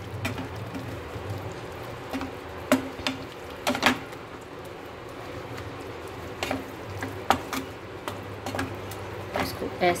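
Wooden spatula stirring and scraping a milky potato halwa around a non-stick kadai, with a handful of short knocks and scrapes against the pan over a steady low hum.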